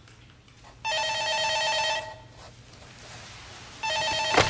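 Office desk telephone ringing with a trilling two-tone ring: one ring of about a second starting just under a second in, and the next ring beginning near the end.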